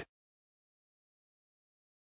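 Near silence: the audio track is empty.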